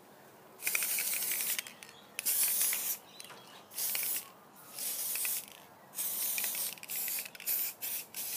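Aerosol can of silver hair-colour spray hissing in about seven short bursts, each half a second to a second long with brief pauses between, as it is sprayed onto hair.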